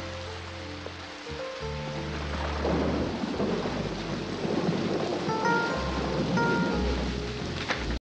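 Rain falling with a rumble of thunder that swells up about two and a half seconds in and carries on, under a soft music score of sustained low tones and a few short higher notes.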